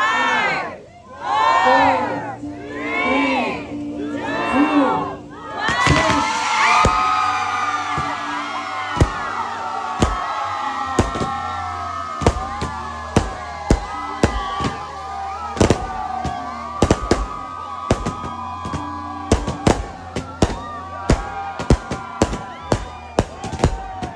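A crowd chants in unison, about one shout a second. About six seconds in, loud cheering and screaming break out as gender-reveal fireworks are set off. Sharp firework bangs and crackles then pop again and again under the cheering, coming faster towards the end.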